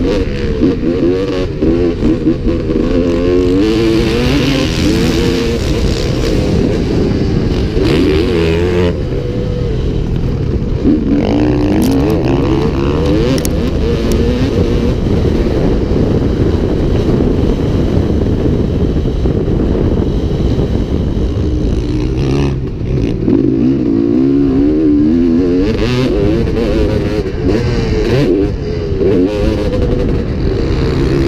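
2002 Honda CR250's two-stroke single-cylinder engine being ridden hard, heard close from the rider's helmet camera, its pitch rising and falling constantly as the throttle is opened and shut through the track's hills and turns.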